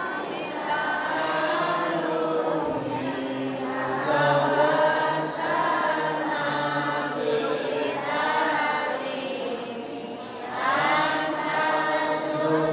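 A group of voices chanting together in a slow, melodic unison recitation, with a short breath about ten seconds in before the next phrase starts.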